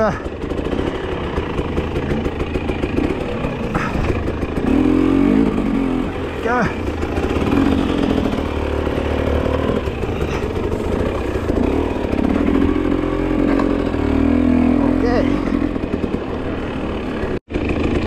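Enduro dirt bike engine running under the rider, its revs rising and falling repeatedly as it picks its way over a rocky trail. The sound drops out for an instant near the end.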